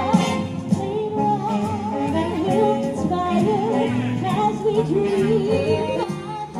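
Christmas show music: singers holding wavering, vibrato-laden notes over a backing band, with no words sung clearly.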